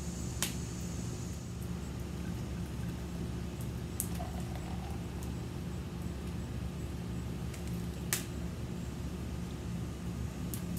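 An aluminium beer can snapped open with a sharp click about half a second in, then beer poured into a glass pint glass, with a couple of lighter clicks later, all over a steady low hum.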